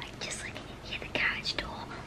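Whispered speech close to the microphone.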